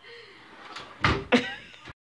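Wooden kitchen drawer pushed shut, sliding and then banging closed twice in quick succession about a second in.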